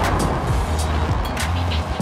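Fireworks going off over music: a steady low rumble with several sharp cracks.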